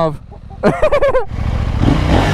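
KTM 890 Duke R parallel-twin engine starting about a second and a half in and running, its note rising briefly near the end.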